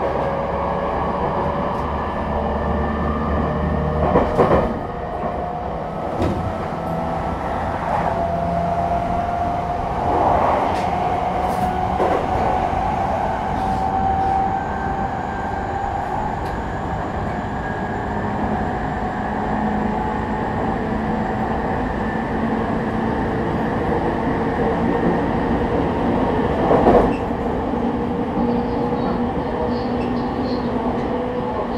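JR East E217 series EMU motor car with a Mitsubishi IGBT inverter, running between stations and heard from inside the car. The traction motor whine climbs steadily in pitch over the first dozen seconds as the train gathers speed, then levels off and slowly sinks. Beneath it is a steady rumble of wheels on rail, with a few louder knocks.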